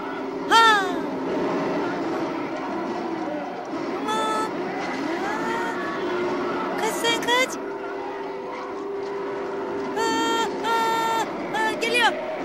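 Sound of a film playing on a television: voices crying out in wails, some falling, some held, over a steady noisy rumbling background.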